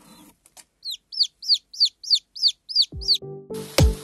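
Lohmann Brown chicks peeping: a run of about eight short falling peeps, about four a second. Music with a steady beat comes in near the end.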